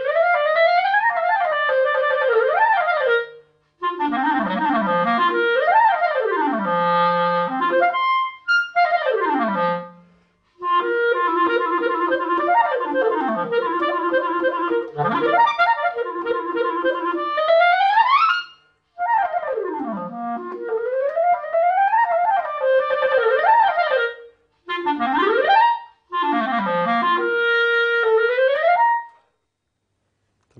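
Clarinet played solo on a Vandoren Masters CL4 mouthpiece with a 3.5+ V12 reed: fast runs and arpeggios sweeping up and down across the registers, in several phrases with short breaks for breath. The playing stops about a second before the end.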